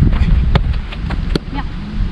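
Wind buffeting the microphone, with two sharp thuds of a football, about half a second in and again just past the middle, and a few fainter knocks.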